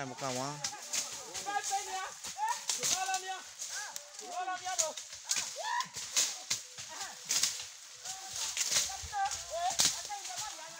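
Voices talking back and forth, with scattered sharp swishes and strikes of a machete cutting through dry brush.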